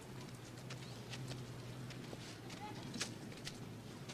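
Faint outdoor film ambience: a low steady hum with scattered light clicks and knocks at irregular times.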